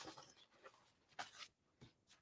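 Near silence, with a couple of faint, brief paper rustles a little over a second in as paper napkins are slid aside.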